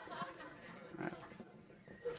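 Faint, scattered laughter and chuckles from an audience.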